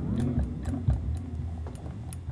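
Electric guitar strings of a Squier Jazzmaster Affinity sounding low notes that waver up and down in pitch, with a scatter of small ticks and pings. The ticking is the strings catching and slipping in the nut slots: the nut is poorly cut and binds the strings even after being lubricated.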